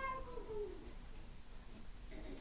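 A single drawn-out, high-pitched cry that wavers slightly in pitch and fades away within the first second, followed by faint room sound.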